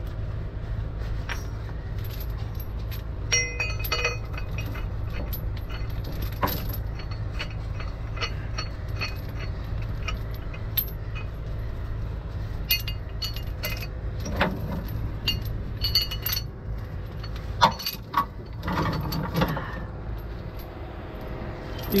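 Steel chain links and a shackle clinking and rattling as they are handled and rigged, in scattered short clinks. Under them a heavy truck engine runs steadily.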